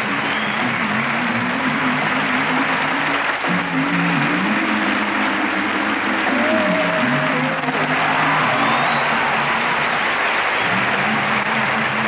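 Audience applause over a band playing music with held notes.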